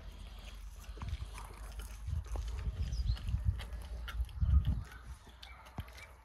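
Lion cubs feeding on a carcass, chewing and tearing at the meat with small wet clicks, and deep rumbling growls that swell about two seconds in and are loudest near four and a half seconds.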